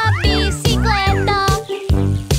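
Upbeat children's cartoon music with a steady bass beat and pitched tones that slide up and down in arcs, a few times a second.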